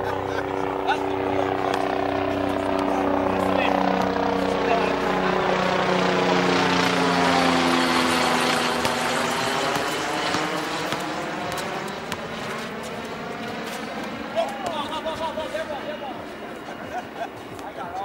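A low-flying aircraft passing overhead: a steady engine drone whose tones slide down in pitch as it goes by. It is loudest about halfway through, then fades.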